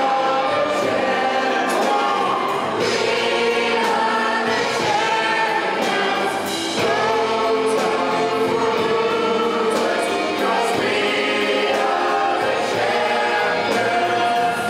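A large ensemble of young performers singing together in chorus with instrumental backing, in a live stage musical performance.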